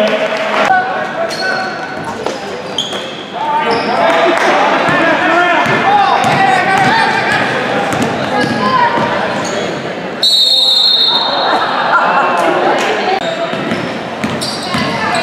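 Basketball dribbled on a hardwood gym floor amid crowd voices echoing in the hall. About ten seconds in, a loud, high whistle blast of about a second cuts through, typical of a referee's whistle stopping play.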